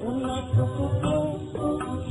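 Music from a 1940s Hindi film song: a melody line over low drum strokes about twice a second.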